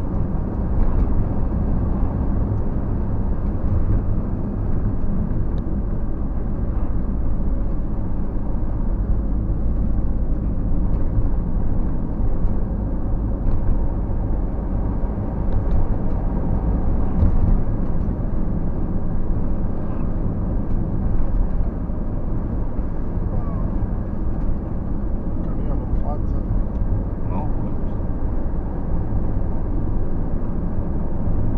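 Steady low rumble of a car driving at road speed, engine and tyre noise heard from inside the cabin.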